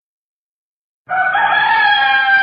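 About a second of silence, then a rooster crows: one long call, held and falling slightly in pitch, that opens the song.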